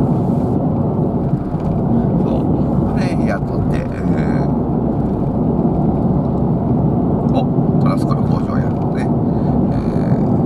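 Steady road and engine noise inside a moving car's cabin at highway speed, a dense low rumble that runs on without a break.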